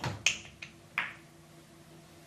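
Pool balls clicking against one another as the racked balls scatter from an opening break shot: about four sharp clicks in the first second, each softer than the last.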